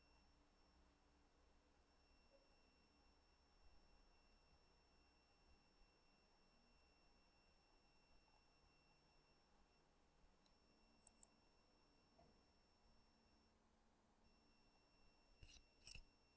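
Near silence: faint room tone with a thin, steady high electrical whine. A few faint computer mouse clicks come through about ten and eleven seconds in, two of them close together.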